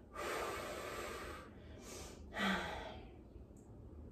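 A woman breathing out audibly in a long exhale, then a second, shorter breath about two and a half seconds in that opens with a brief voiced sigh.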